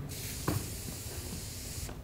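Aerosol spray can sprayed in one continuous hiss of nearly two seconds that stops just before the end, with a soft knock about half a second in.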